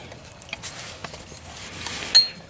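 Faint rustling and a few light clicks of hands handling a slotted O2 sensor removal socket and the sensor's wiring.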